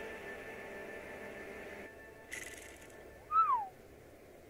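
Quiet film-score music fading out and stopping about two seconds in. After a brief hiss, a single short whistle-like call falls in pitch about three seconds in; it is the loudest sound here.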